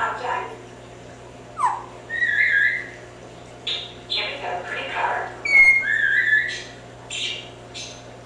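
Timneh African grey parrot whistling and chattering: a quick downward whistle, then several short warbled whistles, with mumbled speech-like chatter in between.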